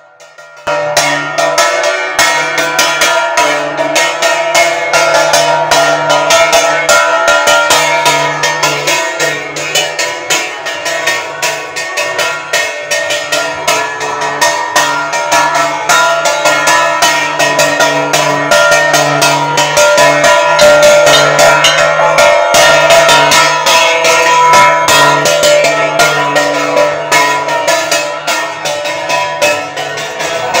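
Loud, rapid clanging of temple bells and cymbals with drumming over held tones, typical of the live music at a Hindu temple ritual. It starts abruptly about half a second in and keeps going without a break.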